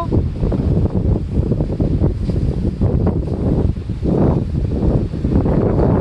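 Wind buffeting the phone's microphone in uneven gusts, a loud, low rumble.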